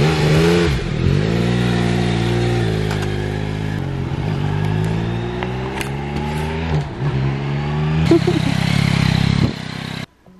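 Yamaha MT-09's inline three-cylinder engine revving as the motorcycle pulls away, its pitch rising and falling with the throttle and gear changes, with a sharp louder rev about eight seconds in.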